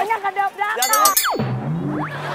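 Laughing and shouting voices, then an added comedy sound effect about a second in: a quick sweep that drops steeply from high to low pitch, settling into a low held tone.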